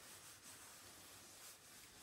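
Near silence, with only the faint rub of a clothes iron sliding over fabric on an ironing board.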